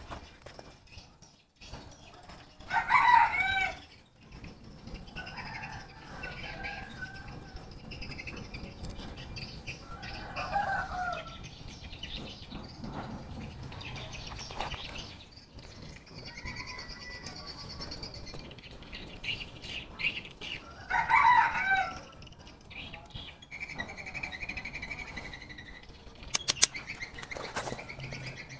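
Chickens calling on and off, with two loud calls from a rooster crowing, about three seconds in and about twenty-one seconds in.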